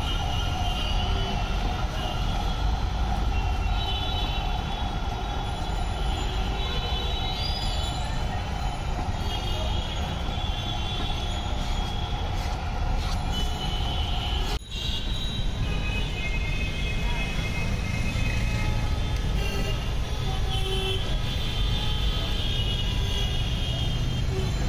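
Busy street traffic: a steady low rumble of vehicles with horns tooting and held over it, and voices in the background.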